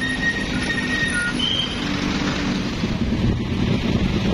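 Steady road traffic: vehicle engines and tyres passing, with a few faint brief high tones in the first couple of seconds.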